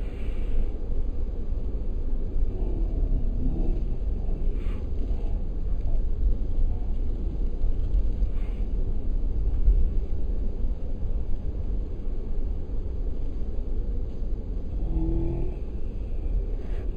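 Steady low rumble of a car driving, heard from inside the cabin. Faint, brief wavering tones come through a few seconds in and again near the end.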